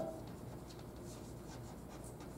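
Chalk writing on a blackboard: a faint series of short scratches and taps as the letters are stroked out.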